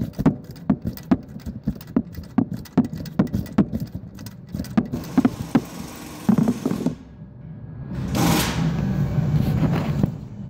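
Ratchet wrench clicking, about three clicks a second, as it turns a puller threaded into a 6.0 Powerstroke injector cup to draw the cup out of the cylinder head. The clicking thins out past the middle, and a longer scraping, rustling noise takes over over the last two seconds.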